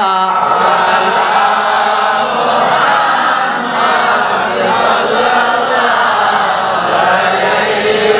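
Islamic devotional chanting sung through a PA system, a melodic line with long held notes that runs without a break.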